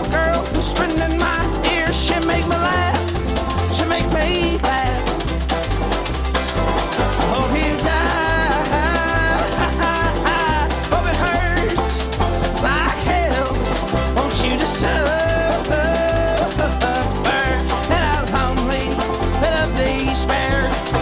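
Instrumental break of a string band: banjo picking and a washboard scraped and tapped with ring-covered fingers, over a bass line stepping between notes about twice a second, with a higher sliding melody line on top.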